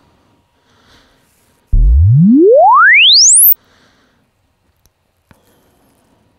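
Sine-sweep measurement test signal, a single pure tone rising steadily in pitch from deep bass to very high over just under two seconds. It starts about two seconds in and cuts off sharply. The sweep is sent through the console and the Waves MultiRack plug-in loop to measure the latency of that path.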